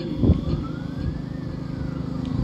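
A distant siren, one faint wail rising and then falling in pitch, over a steady low rumble of outdoor background noise with a few soft thumps near the start.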